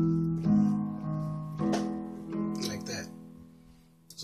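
Yamaha Portable Grand electronic keyboard playing sustained piano chords from the song's progression, with a new chord struck about every second. The last chord fades out near the end.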